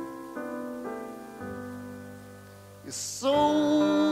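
Solo piano playing slow, sustained chords that change a few times. About three seconds in, a male voice comes in on a long held note over the piano.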